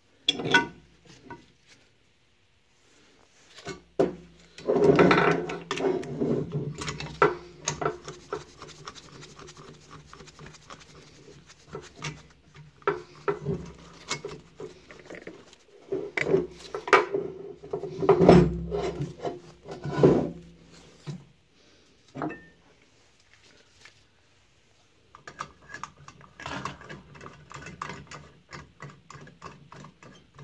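Hands handling and rubbing over a cast-iron cylinder head: irregular bouts of scraping and rubbing with a few sharp knocks, broken by short quiet pauses.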